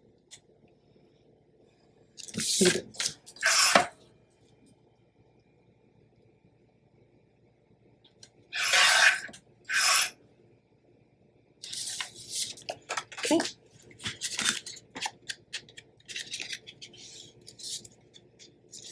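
Card stock and patterned paper being handled and slid over a cutting mat, in a few loud rustling, scraping bursts with quiet gaps between. Near the end comes a run of short, quick rubbing strokes, an ink pad drawn along the edge of a paper piece.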